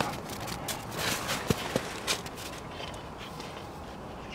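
Central Asian shepherd dogs romping in snow: irregular crunching and rustling of snow under paws and bodies, with two brief faint squeaks about halfway through.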